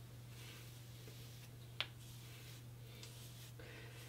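Near silence: faint room tone with a steady low hum and a single soft click about two seconds in.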